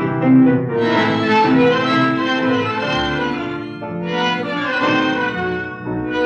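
Instrumental passage of a 1937 tango played by an orquesta típica: violins and bandoneóns carry a sustained, legato melody over the ensemble, with no voice. The old recording is restored and its sound stops short of the highest treble.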